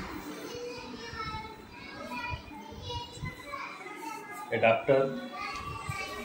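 Children's voices in the background, talking and playing, with a louder voice briefly about four and a half seconds in.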